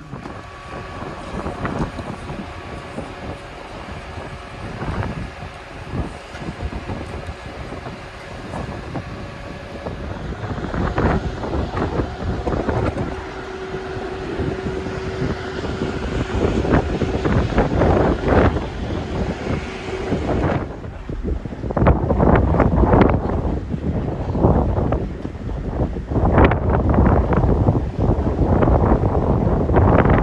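Wind gusting across the microphone on the open deck of a ferry under way, over a steady hum from the ship. About twenty seconds in, the hum falls away and louder, gusty wind buffeting takes over.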